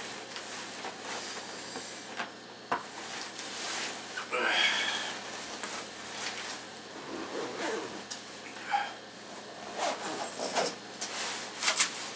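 Rustling, clicks and small knocks from a backpack and a nylon winter coat being handled and packed, with a brief voice-like sound about four seconds in.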